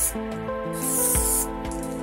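Aerosol spray paint can hissing in a short burst around the middle, over background music.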